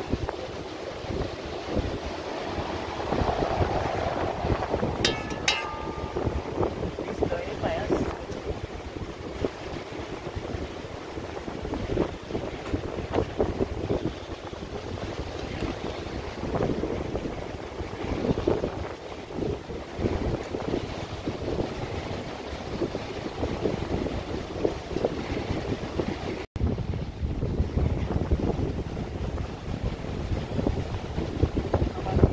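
Wind buffeting the microphone in uneven gusts, with surf in the background.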